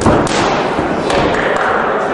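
A boxing glove punch landing with a thud right at the start, with voices shouting around it.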